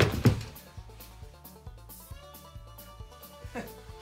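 A person jumping down and landing on a laminate floor with a heavy thump, a second knock following a moment later; after that only background music with a steady beat.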